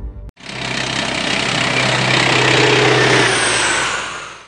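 A loud, engine-like rushing roar with a steady low hum beneath it, likely an added sound effect. It builds for about two seconds and then fades away near the end.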